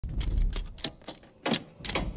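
A series of sharp clicks and taps, about six in two seconds, the loudest about a second and a half in, over a low rumble.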